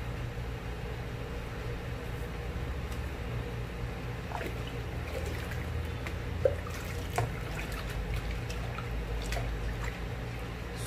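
Hot liquid soap base being poured from a steel bowl into a basin of liquid soap and scraped out with a spatula: faint trickling and dribbling, with two light knocks about six and a half and seven seconds in.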